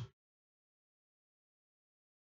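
Silence: the sound is cut to nothing, with only the tail of a spoken word at the very start.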